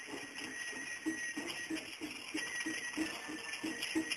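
Japanese festival float music (matsuri bayashi): a steady drumbeat about three to four times a second, with a thin, steady high tone above it.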